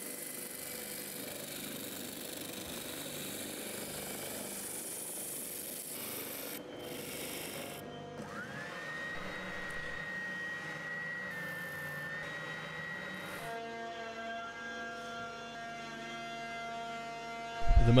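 Spindle sanders running, with hardwood guitar parts pressed against the spinning sanding drum: a steady hiss of abrasive on wood. About eight seconds in, a motor whine rises and holds a steady pitch, and from about thirteen seconds a steady motor hum takes over.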